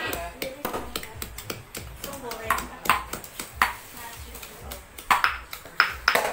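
Cleaver chopping on a cutting board: sharp, irregular knocks with a slight metallic ring, mixed with clinks of bowls and utensils and people talking.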